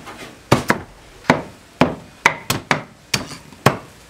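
Heavy cleaver chopping spit-roasted pork on a round wooden chopping block: about ten sharp chops at an uneven pace.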